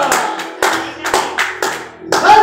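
Hands clapping in a steady beat, about two claps a second, over music, as a held sung note fades out at the start.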